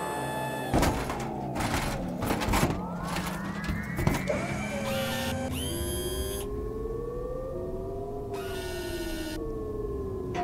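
Synthesized sci-fi sound effects: a run of sharp clicks and clatters in the first few seconds, then sliding electronic tones that arch, rise and fall like a slow siren.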